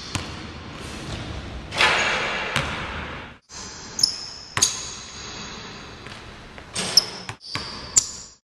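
Basketball bouncing on a gym floor, a few sharp bounces spaced unevenly, ringing in a large hall, with high squeaks between them.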